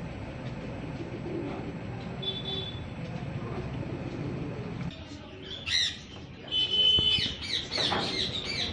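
Pigeons cooing in a loft, a low, steady murmur. About five seconds in it drops away, and sharp, high chirping bird calls come in several times.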